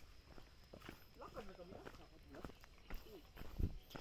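Footsteps on a dry dirt trail: irregular soft steps of walkers, with faint voices of companions talking a little ahead.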